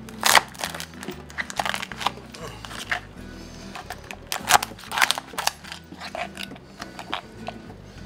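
Cooked Maine lobster tail shell cracking and crunching as a knife cuts it open on a plastic cutting board: a run of sharp cracks, loudest just after the start and again about halfway through. Background music plays underneath.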